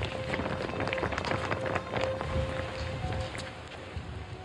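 Several people running up in a quick, irregular patter of footfalls, over a dramatic music score holding a sustained note.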